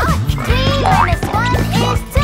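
Children's song backing music with a squeaky cartoon character cry of 'Ouch!' and sliding-pitch cartoon sound effects over it, starting with a steep falling glide.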